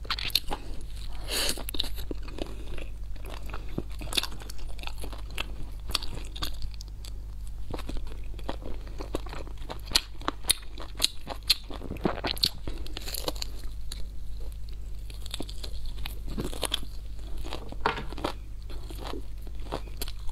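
Close-miked chewing and biting of braised pork ribs and wide noodles: wet chewing broken by many sharp crunches and clicks all through, over a steady low hum.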